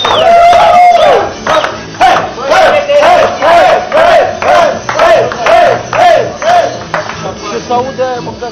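A group of men chanting together in a steady rhythm, with hand claps on the beat about twice a second, after one long drawn-out shout at the start.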